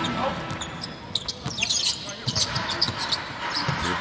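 Basketball game court sound: a ball bouncing on the hardwood floor and sneakers squeaking as players run, with a few short high squeaks about one and a half to two seconds in, over the murmur of voices in the arena.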